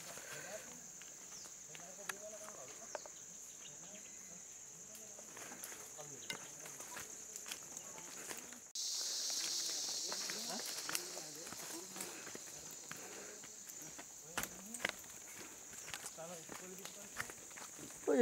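Footsteps crunching on dry leaf litter and twigs along a forest trail, with scattered crackles, under a steady high-pitched insect drone and faint distant voices. About halfway through, the high hiss suddenly gets louder and stays up.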